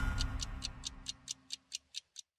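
Clock-like ticking sound effect, even and quick at about four to five ticks a second, over the tail of theme music that fades out in the first second.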